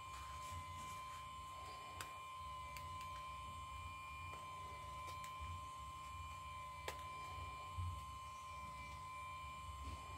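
Faint steady electrical hum with a thin high whine, and a few light clicks and taps of a small phone being handled in the fingers.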